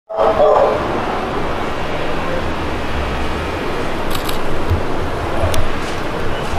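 Camera shutters clicking a few times, about four seconds in and again near the end, over steady street noise with a low rumble.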